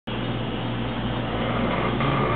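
A steady hiss with a constant low hum underneath, unchanging throughout, with no distinct events.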